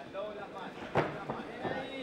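Background voices calling out in an arena, with one sharp slap-like impact about a second in.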